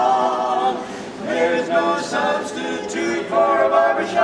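Barbershop quartet singing a cappella in close harmony: a held chord, then a run of shorter sung notes from about a second in.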